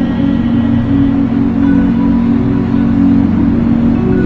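Soft instrumental worship music: a keyboard holds a steady sustained chord, with a faint change in the upper notes about halfway through.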